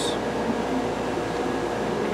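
Steady background noise of a workshop: an even hiss and hum, like ventilation or an air-handling fan running, with no distinct events.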